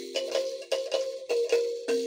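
Akogo, the Ugandan thumb piano, played solo: metal tines plucked in a repeating melody of about four notes a second, each note starting with a click and ringing on. A lower note comes in near the end as the phrase starts over.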